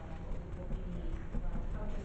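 Indistinct, muffled speech in a meeting room over a steady low rumble.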